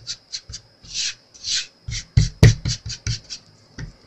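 Hands handling a small cast-resin soap dish on a work surface: two soft rubbing sounds, then a cluster of knocks a little past halfway as it is set down, followed by a few lighter quick taps.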